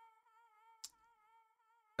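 Near silence, with a very faint wavering tone and a single short click a little less than a second in.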